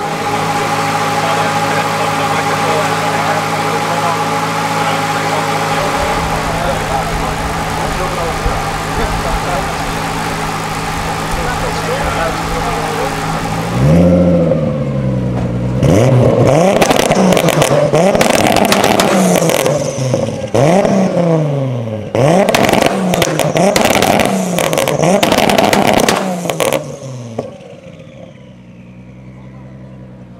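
A single-turbo RB25DET inline-six in a Nissan 200SX idles steadily, then is revved again and again, its pitch rising and falling several times, with sharp cracks from the exhaust between the revs. Near the end it drops back to a quieter idle while a falling whine fades out.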